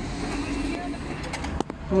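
Cash machine running with a steady hum, then a quick run of sharp clicks about one and a half seconds in, as it pays out banknotes.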